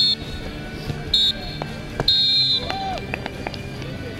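Referee's whistle blown three times: two short blasts, then a longer one of about half a second.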